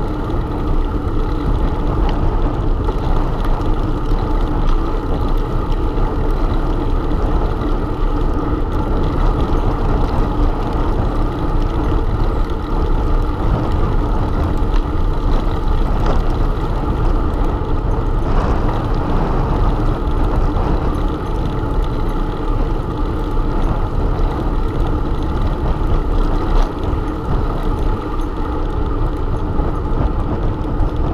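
Steady rumble of wind buffeting and tyre noise on a camera microphone mounted on a moving bicycle, loud and unbroken.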